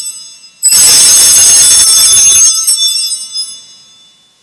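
Altar bells, a cluster of small handbells, shaken at the elevation of the consecrated host: one ringing dies away, then a fresh shake a little under a second in rings loudly for about two seconds and fades out.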